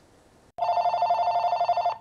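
Telephone ringing with a steady two-tone trill, starting about half a second in.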